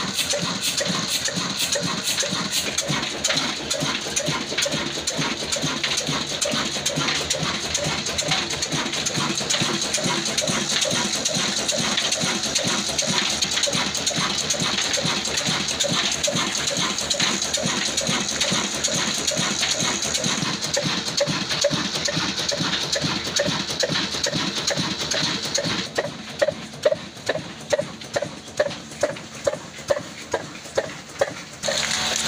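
Old stationary black diesel engine running at a steady beat, a fast, even train of mechanical knocks. Near the end the sound changes to separate loud exhaust puffs about two a second.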